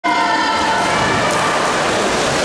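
Swimmers diving in and splashing at the start of a race in an echoing indoor pool hall, under steady crowd noise. A ringing tone fades out over the first second or so.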